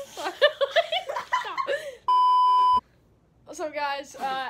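A steady electronic bleep, one flat tone about three-quarters of a second long, comes in about halfway through, cutting into a young person's excited, laughing talk. It has the sound of a censor bleep laid over a word.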